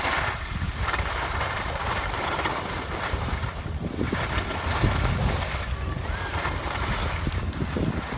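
Wind buffeting the microphone while skis slide over packed snow on a groomed run, a steady noisy rush with low rumbling gusts.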